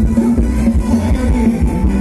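Loud live Thai ramwong band music over a PA: a drum kit keeping a steady beat under guitar, with a heavy bass.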